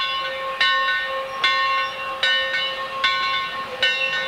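Steam locomotive bell ringing steadily, struck about once every 0.8 seconds, each stroke ringing on into the next, over a faint hiss of steam.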